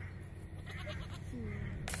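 Domestic goats bleating, a couple of short wavering calls, then a sharp click near the end.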